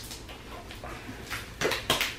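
Homemade slime being worked by hands in a plastic tub: mostly quiet, then a few short squelches in the second half.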